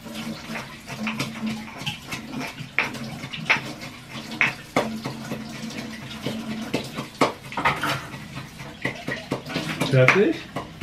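Kitchen tap running water, with irregular light knocks and clicks throughout.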